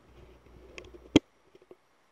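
Handling noise on an Arcano ARC-MICAM shotgun microphone as its bass switch is changed to the brighter, more treble-focused setting. There is a low rubbing rumble, then a single sharp click a little over a second in, followed by a few faint ticks.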